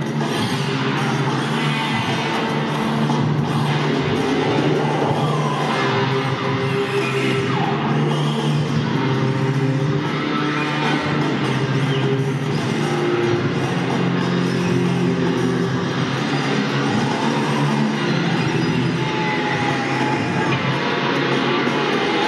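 Dense, unbroken live music, an electric guitar through effects pedals among it, over a steady low drone.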